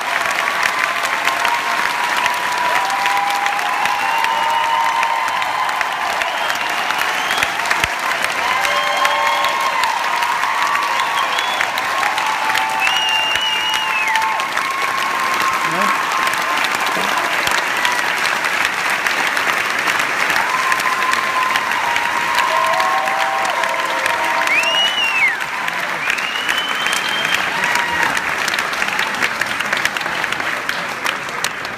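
A large theatre audience applauding, dense steady clapping with scattered cheers and whoops rising above it.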